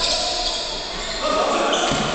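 Basketball game in play on a wooden gym floor: the ball bouncing and players moving on the court, echoing in the large hall.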